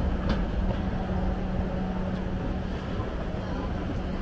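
Escalator running while being ridden: a steady mechanical hum over a low rumble, with the general din of a busy indoor space around it.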